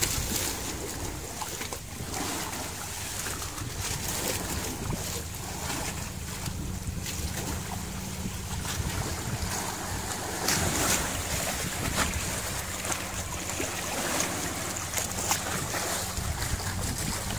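A boat engine drones steadily while water rushes and splashes against the hull and around a swordfish hauled alongside, with wind buffeting the microphone.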